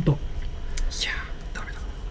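A short, breathy whisper about a second in, in a lull between speech, over a low steady hum.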